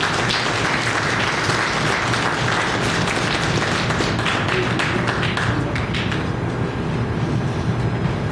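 An audience applauding, the clapping dying away about six seconds in, over a steady low hum.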